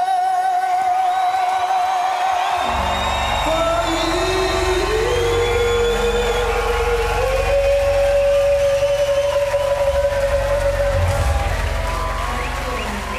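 Live concert music: a female singer holds a long note with vibrato, then a full band with heavy bass comes in about three seconds in and a rising melody line takes over.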